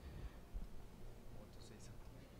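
Handheld microphone being handled as it is passed from one person to another: low bumps and rumble, the sharpest about half a second in, with faint whispering near the end.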